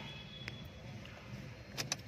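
Ignition key being turned in a Mahindra Bolero's switch: a faint click about half a second in and two sharp clicks near the end, over a low steady hum.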